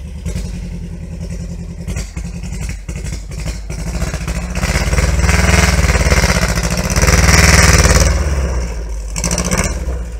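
A VW Beetle's engine running as the car drives slowly over grass. It is revved up twice about halfway through, getting much louder each time, then eases back.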